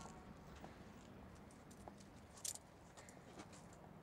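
Near silence with a few faint footsteps of hard shoes on asphalt, spaced about a second apart, and one brief sharper click about two and a half seconds in.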